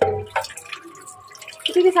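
Water from a kitchen tap pouring into a metal pot in a steel sink, with splashing and dripping.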